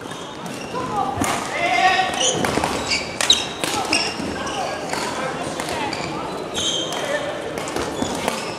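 Badminton rally in a sports hall: rackets hitting the shuttlecock with sharp cracks, and court shoes squeaking on the floor. Voices sound in the background.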